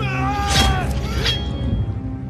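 A high, wailing cry that falls in pitch over the first second, with an explosion bursting about half a second in and a second, smaller crack just after a second, over music.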